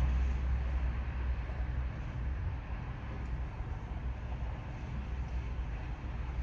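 Steady low rumble and hiss inside a stationary car's cabin, its engine idling.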